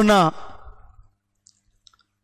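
A man's voice ending a drawn-out word, its echo dying away in the room, then near silence broken by two faint clicks near the end.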